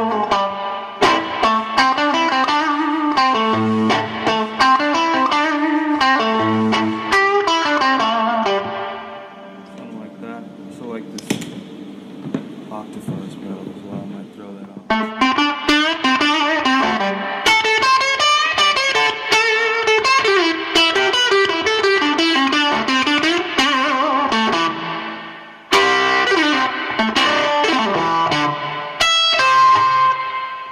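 Epiphone Casino electric guitar played through a Fender Vibro-King amp: single-note lines and chords, driven a little dirty. About nine seconds in the playing drops to a quieter ringing sustain. It picks up again at full level about fifteen seconds in, with a brief break a little before the end.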